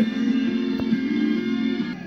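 Music playing through the speaker of a 1948 Westinghouse H104 tube table radio, with held notes.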